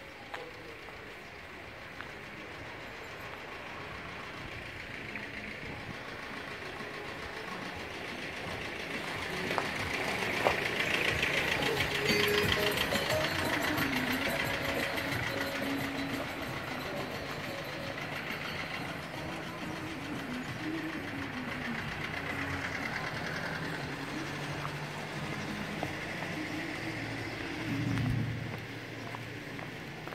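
Outdoor street ambience: a broad rushing noise swells over about ten seconds, peaks near the middle and slowly fades, with faint voices in the background.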